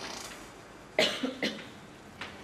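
A man coughing twice in quick succession about a second in, the first cough the louder.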